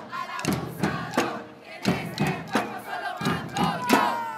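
A group of women shouting a protest chant together, with drums of a street batucada struck with sticks. Sharp drum hits come every half second or so under the shouting.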